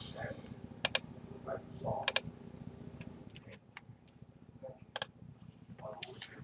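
A computer mouse clicking several times, sharp separate clicks with some in quick pairs.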